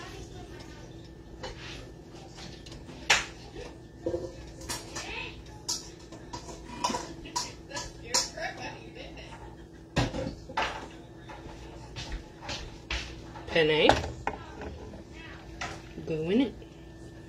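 Clatter of cookware and utensils: irregular clinks and knocks against a pot and a large skillet, a few sharp ones standing out, as cooked penne is readied and tipped into the skillet.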